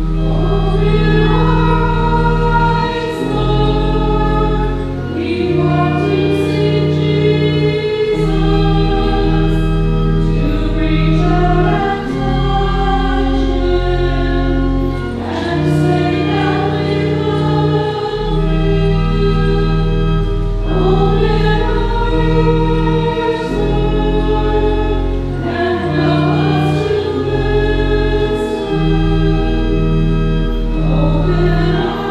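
A choir singing a slow hymn with organ accompaniment, the held bass notes changing every few seconds.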